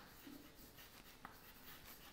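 Faint scratching and light tapping of chalk writing a word on a blackboard.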